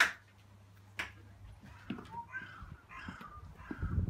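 A door being opened and gone through: a sharp latch click, another click about a second later, then low footsteps onto a stone step near the end.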